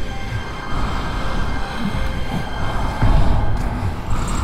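Horror-film score and sound design: a dense, rumbling low drone with steady high tones held above it, swelling briefly near the end.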